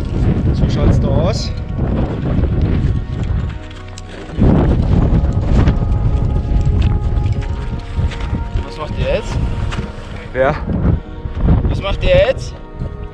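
Strong wind buffeting the microphone in uneven gusts, easing briefly around four seconds in before picking up again.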